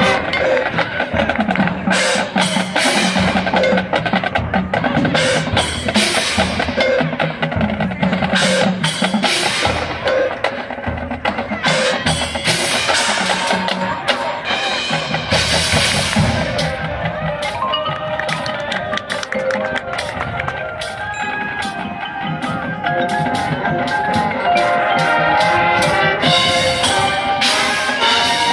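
High school marching band playing its field show: held band chords with prominent percussion, drum hits and front-ensemble mallet keyboards.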